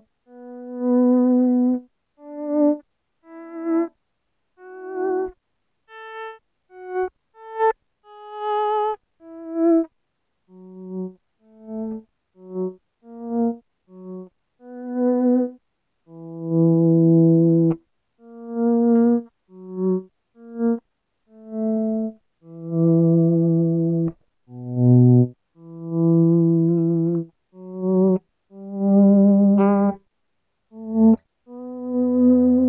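Gibson SGJ electric guitar playing single sustained notes with finger vibrato, one after another, each faded in with a Dunlop DVP4 Volume X Mini volume pedal and stopping sharply, with short silences between. The swells come in so quickly that they sound almost like switching on and off, less natural than with a normal volume pedal.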